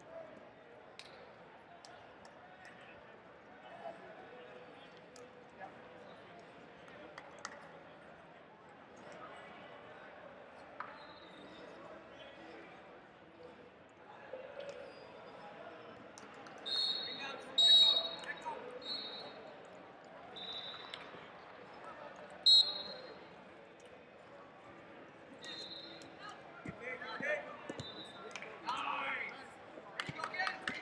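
Murmur of voices in a large sports hall, then from about halfway a series of short, high referee whistle blasts from the wrestling mats, the loudest just past the middle and another sharp one a few seconds later. Coaches' shouting rises near the end.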